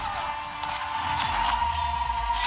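Dramatic action score with a high note held throughout, a few sharp hits, and a deep rumble that comes in a little past the middle.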